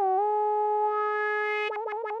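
Synthesizer tone from an intro jingle: a single held note that dips slightly at the start, then holds steady and breaks into a fast pulse, about eight pulses a second, near the end.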